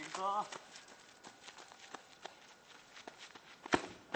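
Running footsteps crunching on gravelly dirt as a player runs up to a soccer ball, ending in one sharp, loud kick of the ball near the end.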